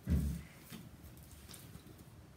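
A brief low thump right at the start, then quiet room tone with a few faint light taps.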